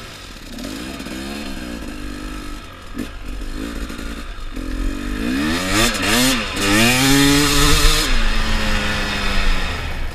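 Dirt bike engine revving as it pulls away across sand: a couple of throttle blips, then from about halfway several rising sweeps as it accelerates up through the gears. The loudest run is just before it backs off sharply near the end to a lower, steadier note.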